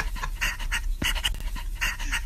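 A man's rapid, breathy huffing, short puffs of breath about three times a second, like heavy panting or wheezing laughter.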